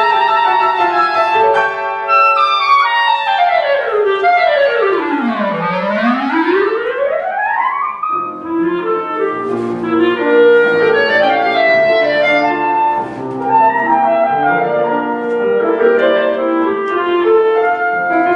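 Clarinet playing with piano accompaniment. About three seconds in, the clarinet plays a fast run that sweeps down to a low note and straight back up. Then it plays a busy passage of quick notes over the piano.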